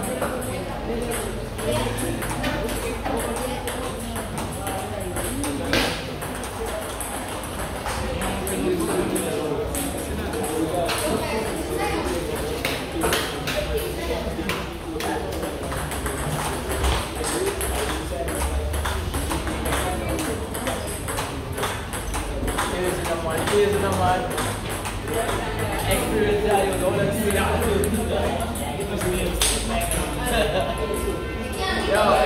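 Table tennis ball clicking off rackets and bouncing on the table in rallies, a run of short, sharp, irregular ticks throughout. Voices and music carry on underneath.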